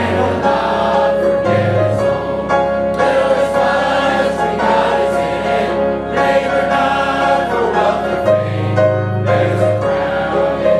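A choir singing in sustained chords, gospel-style, with a deep bass note coming in briefly about one and a half seconds in and again near the end.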